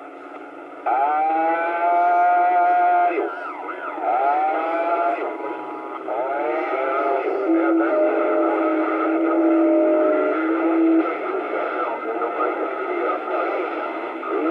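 CB radio receiving skip (DX) on channel 28: crackly, narrow-sounding audio over static. A quieter stretch of hiss gives way about a second in to garbled, unintelligible voices and held tones.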